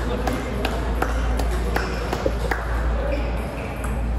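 Table tennis balls clicking sharply on tables and bats at irregular intervals, about two a second, over the steady noise of a large hall.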